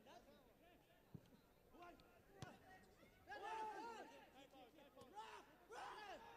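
Faint, scattered shouting voices from the stadium at a football match, several at once, loudest for a moment just after the middle, with a brief sharp knock a couple of seconds in.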